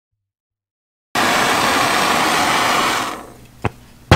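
Handheld gas torch flame hissing loudly, starting suddenly about a second in and dying away about two seconds later as it is shut off, then a single sharp click. The torch is heating an aluminium mower part for brazing.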